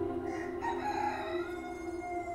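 A rooster crowing once, over soft, sustained background music.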